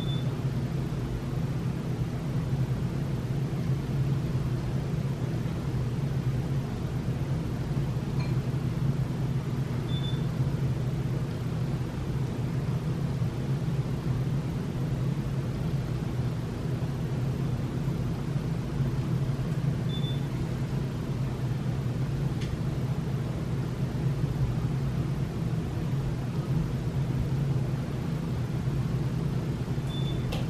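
Steady low hum of background noise with no break or change, and a short faint high beep about every ten seconds.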